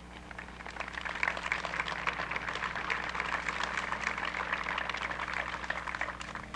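Audience applauding: a dense patter of clapping that builds about a second in and dies away near the end, over a steady low hum.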